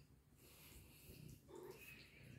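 Faint, soft sounds from a pet cat, barely above silence, starting about half a second in and coming in a few short bits.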